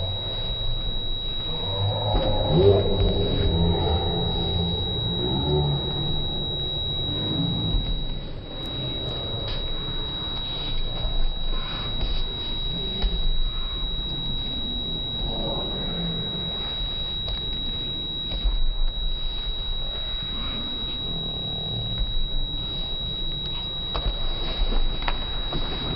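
Slowed-down, pitched-down audio of a karate tournament hall: voices and shouts stretched into low, drawn-out drones, loudest in the first few seconds, over a low rumble. A thin steady high whine runs under it all.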